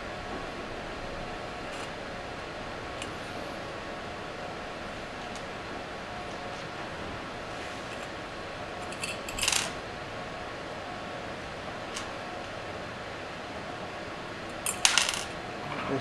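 Small metal screws and a metal bracket clinking and tapping against the inverter's finned aluminium case while it is screwed back together: a few light clicks, with two short bursts of clinking about nine and a half seconds in and again near the end.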